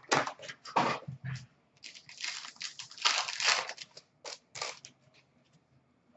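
Hockey card packs being torn open and handled: the wrapper crinkling and tearing and cards rustling, in short irregular bursts that stop about five seconds in.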